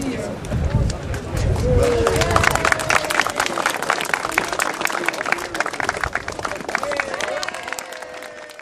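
Crowd applauding, the clapping building about two seconds in and thinning out near the end, with voices calling out and talking over it.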